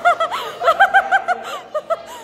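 A young child laughing in a high voice: a quick run of short ha-ha pulses starting about half a second in, with two more near the end.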